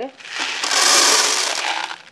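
Something poured from a plastic pitcher into a container: a steady rushing hiss lasting about a second and a half.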